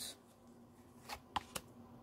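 Faint handling of paper oracle cards: a card is drawn and laid down on the spread, with three light clicks about a second in.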